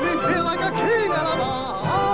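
A man sings a commercial jingle over backing music, his voice sliding up and down in pitch in a warbling, yodel-like way.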